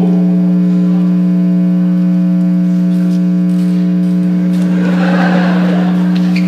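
Loud, steady electrical buzz through the hall's PA system: one unchanging pitched drone that cuts in suddenly, typical of a ground-loop or cable fault in the sound system.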